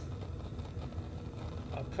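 Fisher burner's gas flame burning steadily, a low, even rushing noise with no breaks.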